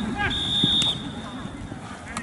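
A whistle blown once: a single steady high tone lasting about half a second, then fading, with a short sharp knock near its end. A brief shout sits just before it.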